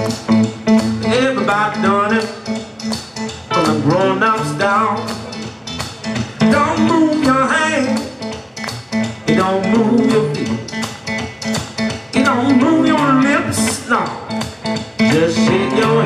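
Live blues band playing a boogie groove: electric guitars, bass, drums and piano over a steady beat, with a harmonica wailing bent notes on top.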